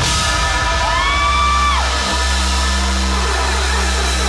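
Live band music played loud through a PA, with a steady deep bass note. About a second in, a voice whoops once, rising and holding for most of a second before dropping away.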